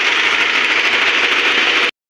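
Loud, steady hissing noise that cuts off abruptly just before the end.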